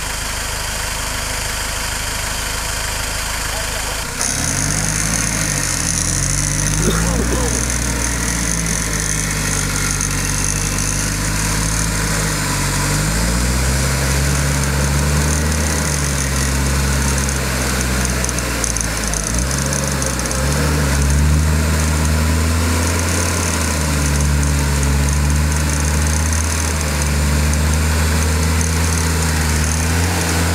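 Four-wheel-drive's engine idling, then from about four seconds in running louder under load, its revs rising and falling again and again as it crawls up a rutted clay track.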